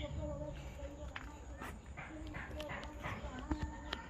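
Faint, unclear voices in the background, with scattered short knocks and rustles.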